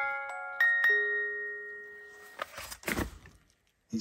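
Wind-up doll's music box playing slow chiming notes of a tune as the clockwork runs down. The last note comes about a second in and rings out, and then the tune stops. A few soft rustles follow.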